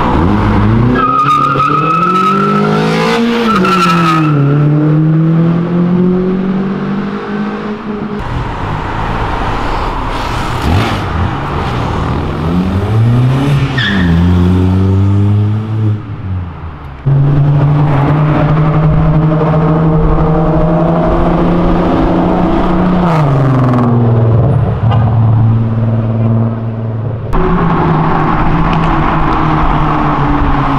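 Car engines accelerating hard on a city street, one car after another, each pitch climbing as it revs, then dropping at a gear change and climbing again. A high, steady squeal lasts about three seconds near the start.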